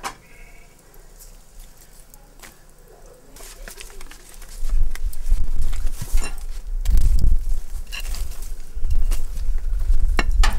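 A low rumble on the microphone sets in about halfway and becomes the loudest sound, with a few sharp knocks and clatters through it. Before it the air is fairly quiet, with one brief faint high call near the start.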